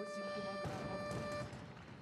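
A steady tone at one pitch with overtones, held until about a second and a half in, over faint background noise.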